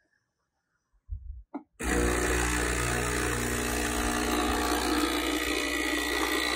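Breville Barista Express steam wand steaming milk in a stainless steel jug. After a second of silence and a few low knocks, steady loud steam hiss with a low rumble starts a little under two seconds in and keeps going.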